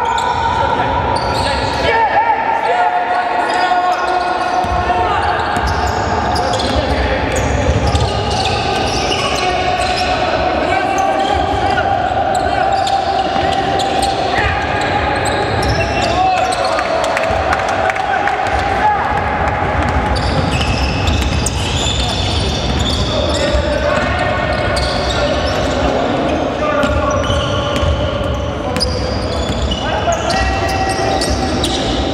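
Basketball being bounced on a hardwood court in a large, echoing sports hall, with players' voices. A steady tone runs underneath and changes pitch a few times.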